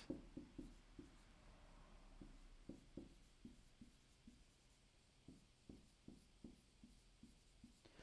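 Faint dry-erase marker strokes on a whiteboard as words are written: a run of short, irregular scratches and taps, a few a second, thinning out in the second half.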